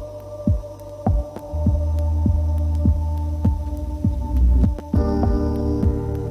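Electronic soundtrack music: a low pulsing thump, a little under two beats a second like a heartbeat, over a steady low drone and held tones. A new layer of higher tones comes in about five seconds in.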